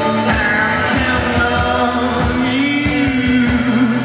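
Live rock band playing, with electric guitars, keyboard and drums, and a man singing long held notes over it.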